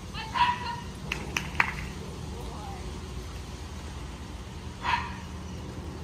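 A dog barking: one bark about half a second in and another short bark near the end, with a few sharp clicks between them.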